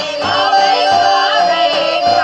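A small group of women singing a Bulgarian folk song together in full voice, over a steady drum beat of about one stroke every half second to second from a tapan, the large two-headed Bulgarian folk drum.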